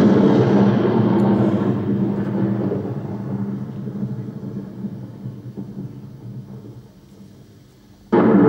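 A deep, rumbling stage sound effect, struck just before, dying away slowly over several seconds until it is faint near the end.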